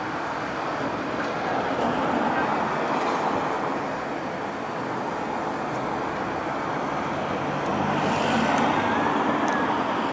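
Steady city road traffic noise, swelling as vehicles pass about two seconds in and again near the end.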